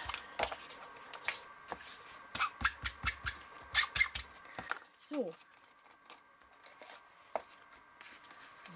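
Ink blending tool's foam pad dabbed and rubbed over paper on a cutting mat, inking the page edges: a quick run of soft taps and scrapes for the first four to five seconds, then quieter.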